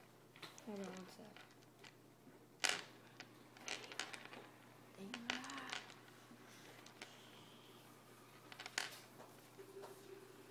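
Faint, scattered crinkles and clicks of plastic candy wrappers being handled, the sharpest about two and a half seconds in and another near the end.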